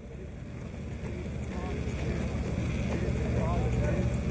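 A low, steady rumble that swells over the first two seconds, with faint, distant voices over it.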